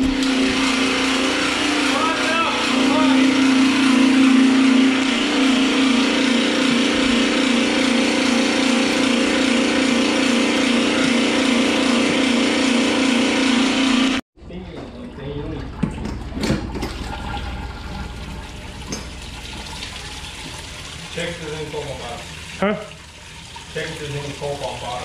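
Small electric transfer pump running with a loud, steady hum while it pumps vinegar through a hose. About fourteen seconds in the hum cuts off abruptly, and quieter liquid pouring and splashing into a plastic tub follows.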